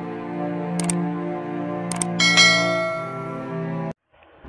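Intro music: a sustained synthesized chord, with sharp clicks about a second in and again near two seconds, then a bright bell-like chime struck just after two seconds that rings on. The music cuts off abruptly just before the end.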